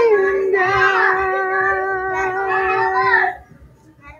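A person singing unaccompanied, sliding down onto one long held note that lasts about three seconds and breaks off near the end.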